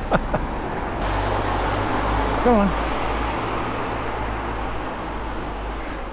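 A vehicle passing on a wet road: tyre hiss swells from about a second in and slowly fades, over a steady low hum.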